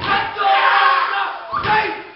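A group of young men chanting a haka in unison, loud and shouted, with a low thud of stamping or body-slapping right at the start and again about a second and a half in.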